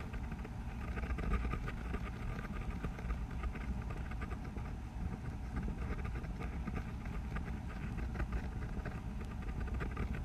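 Steady low background rumble with many faint ticks through it.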